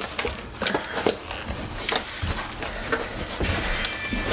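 Paper towels rustling and a disposable aluminium foil pan crinkling under hands that press the towels down onto diced raw potatoes and peel them off, blotting away the moisture. Irregular small crackles and clicks.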